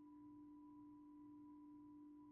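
Near silence: a faint steady hum of one low tone with a fainter higher tone, the background of a poor-quality recording.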